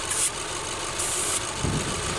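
2010 Subaru Forester's flat-four engine idling steadily with an intake vacuum line pulled off, its short-term fuel trim climbing to add fuel. Two brief high hisses come near the start and about a second in, and a low thump follows near the end.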